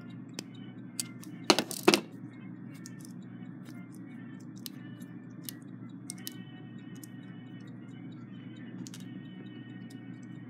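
Small metallic clicks and taps from an alarm-clock movement being handled as a nut on it is loosened, with a couple of louder clatters about one and a half to two seconds in, over a low steady hum.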